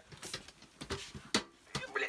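Short metallic clicks and knocks from the lever clamp on a stainless steel distiller boiler lid as gloved hands try to snap it shut, with one sharp click a little past the middle. The clamp will not close over the lid with the column fitted.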